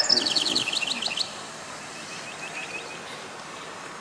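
A bird chirping: a quick trill of about ten high chirps lasting about a second, then a fainter, shorter run of chirps about two seconds in.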